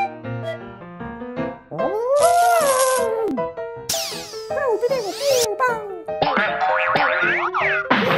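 Cartoon background music with comic sound effects: a wavering, bending cry about two seconds in, then a sweeping whoosh about four seconds in, and more sliding tones near the end.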